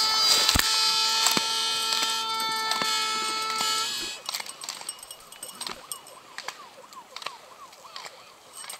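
A steady, held horn tone with several pitches sounds loudly and cuts off suddenly about four seconds in. Sharp knocks of the skier's body and poles striking the plastic slalom gates run through it. After the cut the sound is quieter: skis scraping on snow and more gate knocks.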